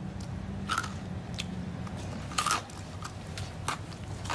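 A few short, crunchy clicks and rustles, scattered irregularly over a steady low hum.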